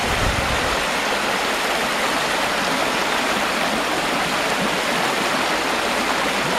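Vizla river rapids running over dolomite steps at spring high water: a steady, even rush of white water.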